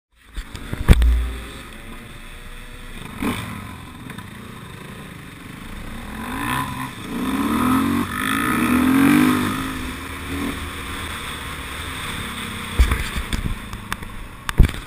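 KTM dirt bike engine running along a trail, its pitch rising and falling in several swells of throttle in the middle of the stretch before settling back. A loud low thump about a second in, and a few sharp knocks near the end.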